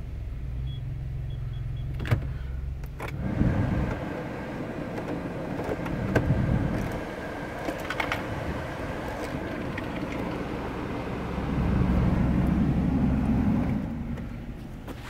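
Steady low hum inside a 2018 Kia Morning's cabin, with a couple of sharp switch clicks. About three seconds in, the climate-control blower fan starts rushing, and it grows louder for about two seconds near the end.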